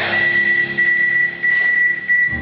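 A steady, high-pitched single tone, held unwavering for about two and a half seconds over a quiet sustained chord from the band.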